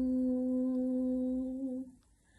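A woman's unaccompanied voice holding one long, steady hummed note in a Telugu Christian song; the note stops just before the end.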